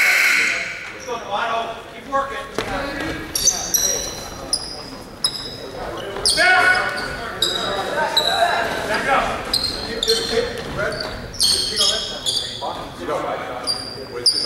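Basketball game on a hardwood gym floor: the ball bouncing, sneakers squeaking in short high chirps, and players and spectators calling out, all echoing in the gym.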